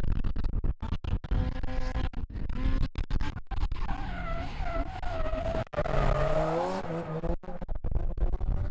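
White Mazda RX-7 drift car sliding through a corner: the engine is held high in the revs, its pitch rising and falling as the throttle is worked, with the tyres skidding and squealing. The revving is loudest about halfway through, and strong wind rumbles on the microphone throughout.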